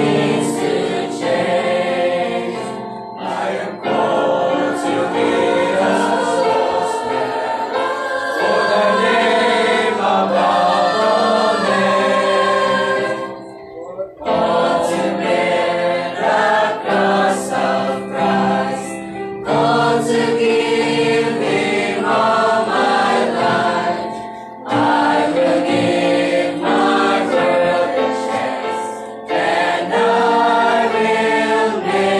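Mixed church choir of men and women singing a hymn together, in phrases with short breaks between them, the longest about 14 seconds in.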